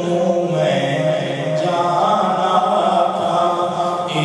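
Unaccompanied male devotional chanting (naat) with long held notes, moving up to a higher line about one and a half seconds in.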